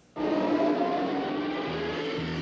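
Vintage car engine running and slowly rising in pitch as the car pulls up, from an advert's soundtrack. A bassline starts near the end.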